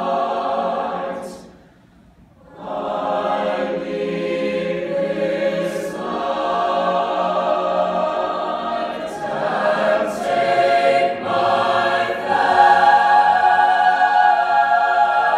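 Mixed high school madrigal choir singing a cappella in sustained chords. The choir breaks off briefly about two seconds in, then comes back and swells louder near the end, with sharp 's' consonants cutting through now and then.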